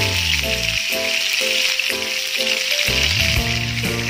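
Yellowfin tuna pieces frying in hot cooking oil in a frying pan, a steady sizzling hiss, with background music.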